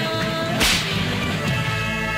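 Old Tamil film-song soundtrack with one sharp crack about half a second in, trailing off in a short hiss, over sustained instrumental notes.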